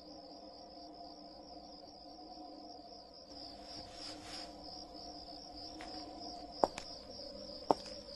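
Crickets chirping steadily and quietly over a low, steady drone, with two short ticks near the end.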